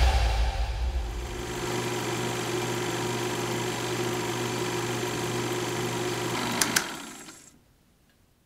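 The track's heavy bass dies away, leaving a steady mechanical whirring hum like a small running machine. Two sharp clicks come near the end, and then the hum fades out to silence.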